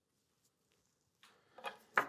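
Near silence for over a second, then a few faint short clicks and one sharper click near the end.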